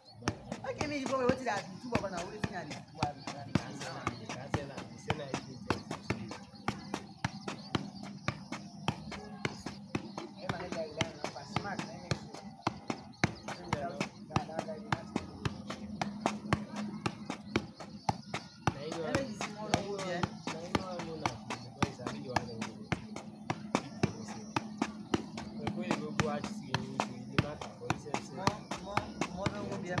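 A football being juggled on the foot: a long, steady run of short thuds, several a second, as the ball keeps striking the shoe. People are talking in the background.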